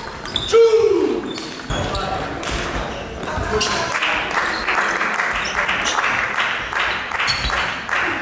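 Celluloid-type table tennis ball clicking off rubber bats and the table during a rally, with more ball clicks from neighbouring tables echoing around the hall. A loud short tone falling in pitch sounds about half a second in.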